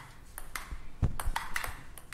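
Table tennis rally sound effect: a ball clicking back and forth off paddles and table in a string of quick, irregular knocks.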